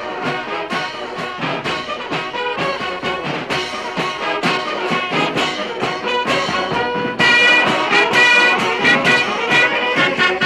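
Brass band music with a steady beat, trumpets and trombones prominent; it gets louder about seven seconds in, with held high brass notes.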